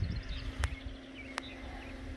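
Faint steady hum of the chicken plucker's three-phase electric motor over a low rumble, with two sharp clicks in the middle.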